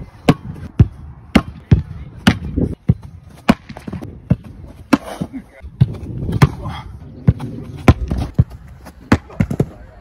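Football being struck and caught: a rapid series of sharp thuds from boots kicking the ball and goalkeeper gloves stopping it, roughly two a second at uneven spacing.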